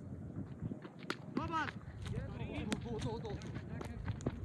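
Players shouting and calling out during an outdoor cricket game, with a drawn-out call about a second and a half in. Sharp knocks come about a second in and again near three seconds.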